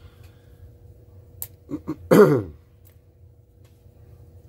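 A man clearing his throat once, briefly, about halfway through, with two short grunts just before it.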